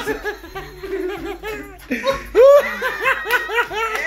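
People laughing hard: a quick run of short laughs, with a louder laugh about two seconds in.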